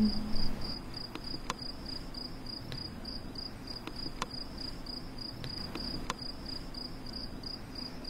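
A cricket chirping in an even, rapid rhythm, several chirps a second, over faint low ambience, with a few scattered faint clicks.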